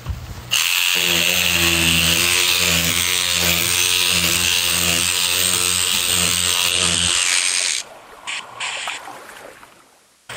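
A small handheld electric motor runs steadily with a hum and a hiss for about seven seconds, then cuts off suddenly. A few light clicks follow.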